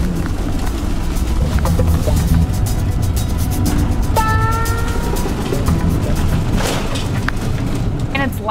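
Inside an Airstream travel trailer under tow: a steady low road rumble with the cabin's contents rattling and clattering as it bounces, and a brief squeak about four seconds in.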